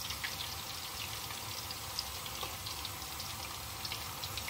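Cauliflower florets deep-frying in a wok of hot vegetable oil: a steady sizzle with small scattered crackles.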